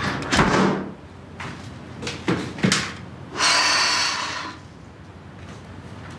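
A door being handled: a few sharp latch clicks and knocks, then a rush of noise lasting about a second.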